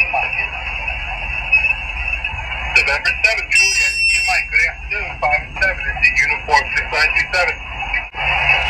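Guohetec Q900 HF transceiver's speaker receiving single-sideband on the 20-metre band: a steady hiss of band noise with faint, garbled voices of other stations, which get busier about three seconds in.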